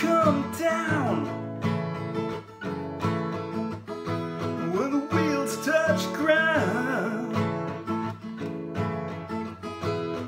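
Acoustic guitar strummed steadily in chords, with a man singing over it around the start and again from about five to seven seconds in.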